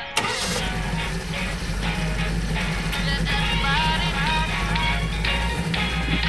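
A car engine starts with a short burst just after the start, then idles steadily with a low hum. Music with a gliding melody plays over it.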